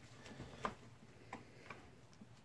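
Four faint, irregularly spaced small clicks and taps as a keyboard's plastic parts and a screwdriver are handled during reassembly.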